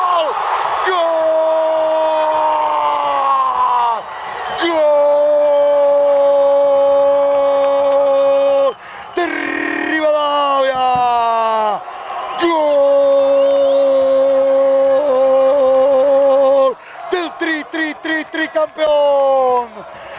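A football commentator's drawn-out goal cry: a man's voice holds one long shouted "gooool" for about four seconds at a time, each breath sliding down in pitch as it ends. The cry is repeated several times with short breaks, with a run of quicker shouts near the end.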